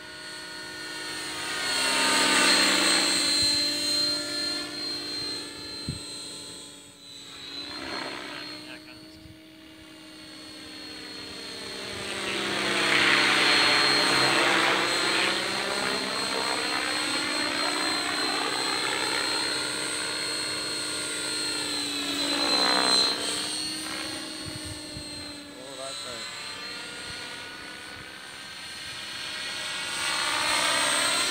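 Outrage Fusion 50 electric RC helicopter flying passes overhead, its main rotor governed at about 1,950 rpm, driven by a Scorpion 4025-630kv motor. The rotor and motor pitch sweeps up and down as it comes and goes, louder as it nears, loudest about two seconds in and again a little before the middle, with a steady high whine underneath.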